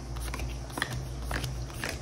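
Tarot cards being dealt one at a time onto a flat surface: about four soft slaps and clicks as each card lands and is slid into place.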